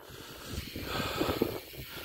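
Bicycle rolling over a rough concrete track, with an uneven rumble and small rattling knocks from the tyres and bike, and wind noise on the microphone.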